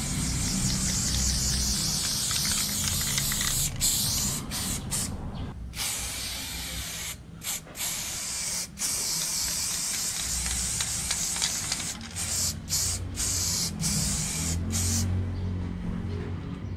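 Aerosol spray paint can spraying paint onto a wall in long hissing bursts, with many short stops between strokes that come more often in the second half.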